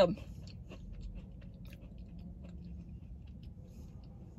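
Someone chewing a bite of a small crunchy chocolate chip cookie with the mouth closed: faint, irregular crunching clicks.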